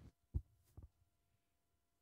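Two low thumps of microphone handling noise as a handheld microphone is lifted from its stand, the first the louder and the second about half a second after it, followed by a faint steady electrical hum.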